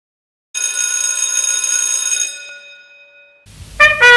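A bell-like ringing starts suddenly about half a second in, holds steady for nearly two seconds, then fades away. Brass music with trumpet notes begins just before the end.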